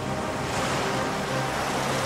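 Rushing surf and churning sea water, swelling from about half a second in, over low sustained music notes.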